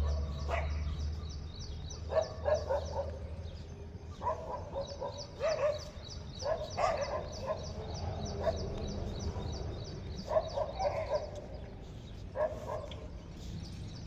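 Short bursts of animal calls every second or two, over a fast, even high-pitched ticking that runs in long stretches.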